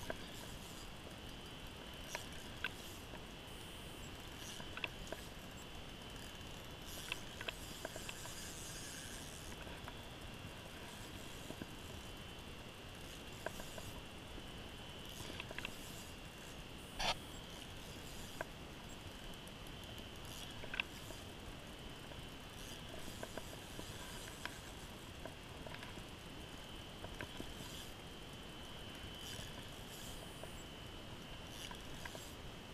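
Faint handling sounds of a spinning rod and reel being worked while playing a fish: scattered single clicks and rustles, the sharpest about two-thirds of the way in, over a steady high hiss.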